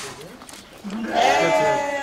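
Sheep bleating: a quieter bleat at first, then a long, loud, wavering bleat starting about a second in.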